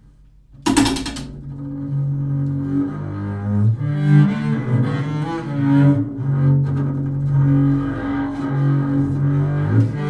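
Unaccompanied double bass played with the bow: after a brief pause, a sharp bow attack under a second in, then a run of sustained low bowed notes moving from pitch to pitch.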